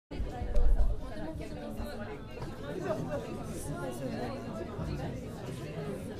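Several people talking and chatting over one another, with a loud low thump about half a second in.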